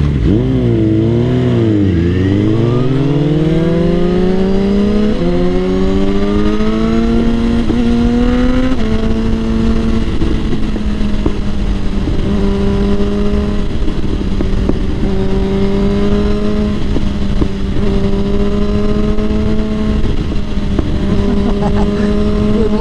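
Suzuki GSX-R1000's inline-four engine heard from the rider's seat, pulling away and revving up through two upshifts, the pitch dropping at each shift about five and nine seconds in. It then holds a steady note at cruising speed.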